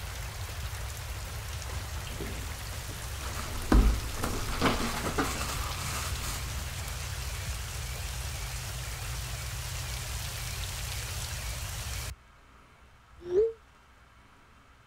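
Heavy rain pouring down a house wall and splashing on the windows, a steady hiss that cuts off suddenly near the end. A few thumps come about four seconds in, and a brief rising tone sounds just before the end.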